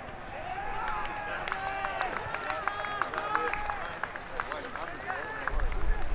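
Players calling and shouting to each other across an open football ground: many short, distant, unintelligible calls overlapping, with a low rumble near the end.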